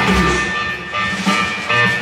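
Live rock band playing through a PA: electric guitars and bass, with drums.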